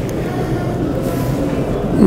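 Steady background rumble with no speech.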